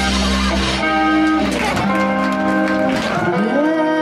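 Live band music with guitar to the fore, playing held notes over bass and drums. About three seconds in, a long note slides up and then wavers.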